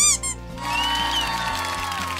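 Background music with an edited-in sound effect: a short sharp burst at the start, then a celebratory crowd cheer and applause swelling up.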